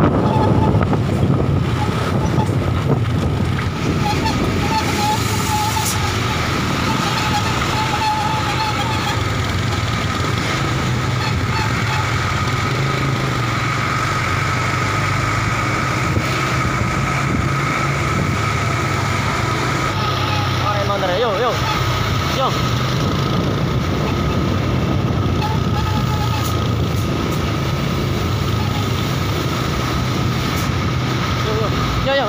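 Steady road traffic and vehicle engine noise with indistinct voices mixed in.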